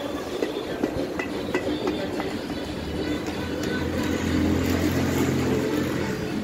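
A string of light metallic clicks and knocks from engine parts being handled on a stripped motorcycle engine, then a steady low drone that builds in the second half and holds.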